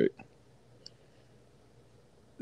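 A pause in a conversation, broken by one faint, brief click about a second in.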